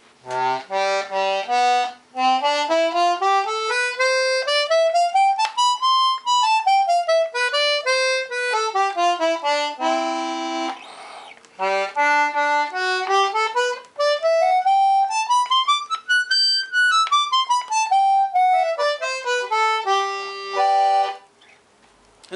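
Hohner D40 Anglo concertina in C and G, with one set of reeds per button, playing scales: one run of single notes climbs step by step and comes back down, a short chord, then a second run that climbs higher and comes back down.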